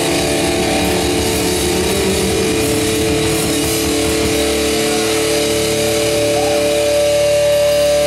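Distorted electric guitar held in sustained feedback: a few steady, droning pitches that hold for seconds at a time. Drums and cymbals play on underneath.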